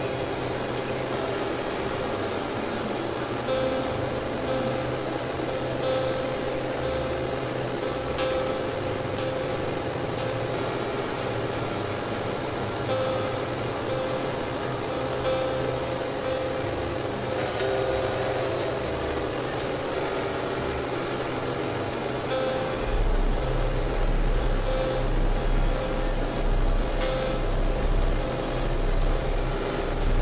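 Experimental electronic drone and noise music from synthesizers: a dense, steady texture of held tones and noise. A deep bass tone comes in about three quarters of the way through and the sound grows slightly louder.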